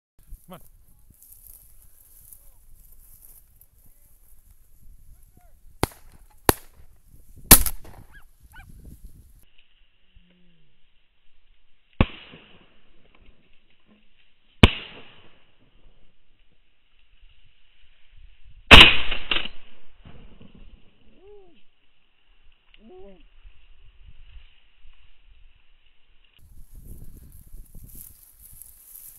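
Shotgun shots at a flushed pheasant: several sharp bangs spread out, the loudest and longest-ringing about two-thirds of the way through.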